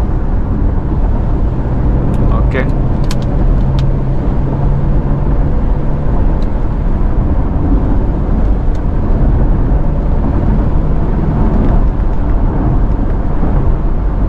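Cabin noise of a Tata Curvv diesel automatic cruising at about 100 km/h. Its 1.5-litre four-cylinder turbo-diesel turns below 2000 rpm with a steady low hum, mixed with tyre and road noise. A few faint clicks come about three seconds in.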